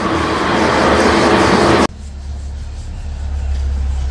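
Road vehicle noise: a loud, even rushing sound that cuts off abruptly about two seconds in, followed by a low rumble that swells and then eases.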